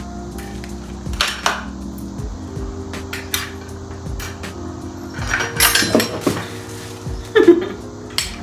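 Stainless steel cocktail tools (bar spoon, strainer and shaker) clinking and knocking against one another and a bamboo stand as they are handled and set in place: a series of separate clinks, several close together near the end. Soft background music runs underneath.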